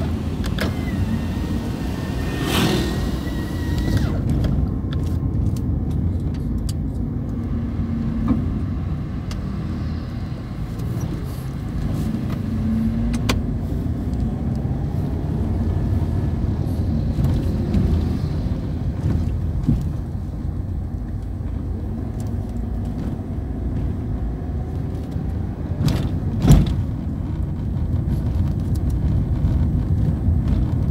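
Car driving slowly, heard from inside the cabin: a steady low rumble of engine and tyres, broken by a few sharp knocks, the loudest about 26 seconds in.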